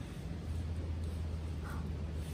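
Wind buffeting the microphone: a steady low rumble that grows a little about half a second in.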